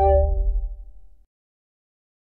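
Intro music ending: held instrument notes and a low bass tone fade out and stop about a second in, followed by silence.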